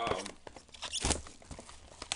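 Plastic shrink wrap on a trading-card box being handled and torn open by gloved hands: crinkling and rustling with small clicks, and one louder rip about a second in.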